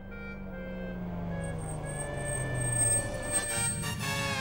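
Cartoon sound effect of a car engine drawing near, growing louder as its pitch falls while it slows. Background music swells in near the end.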